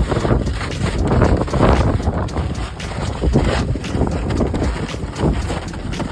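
Wind buffeting the microphone: a loud, irregular rumble that surges and dips.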